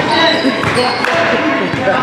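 Basketball bouncing on a hardwood gym floor, a few separate bounces, amid several people talking and shouting at once in a large, echoing gym.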